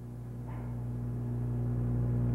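Steady low electrical hum, slowly growing louder.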